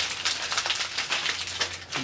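Shiny Fruit by the Foot wrappers crinkling and crackling in quick, irregular bursts as several people peel them open by hand.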